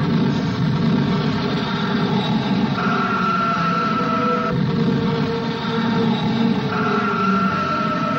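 A dense, continuous rumble of dubbed battle noise that starts abruptly, with a newsreel orchestral score underneath whose held high notes come in twice.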